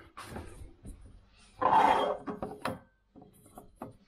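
Handling noise from a hand over the camera: rubbing and knocking on the body, with one loud scrape about a second and a half in and a few sharp clicks around it.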